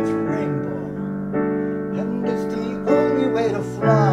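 Digital piano playing a song accompaniment, a new held chord struck roughly every second.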